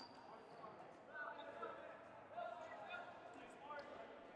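Faint ambience of a large indoor gym during a dodgeball game: distant players' voices echoing, with a few soft rubber-ball bounces.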